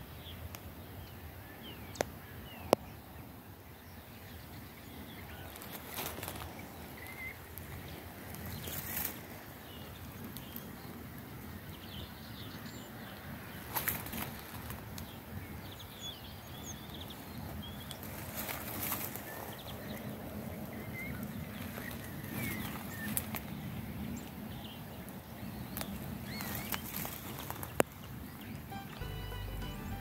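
Outdoor ambience of small birds chirping in scattered short calls over a steady low rumble of wind on the microphone, with occasional brief rustles and clicks. Music comes in near the end.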